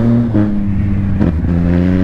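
Motorcycle engine running while the bike is ridden; its note holds steady and changes pitch in steps twice, about a third of a second in and again past the middle.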